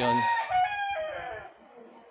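Rooster crowing: one drawn-out call that holds its pitch, steps down and fades out about a second and a half in.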